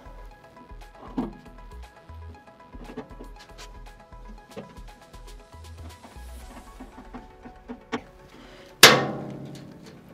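Background music with held tones and a steady low beat, with light knocks and clicks under it. A loud ringing hit comes near the end and dies away.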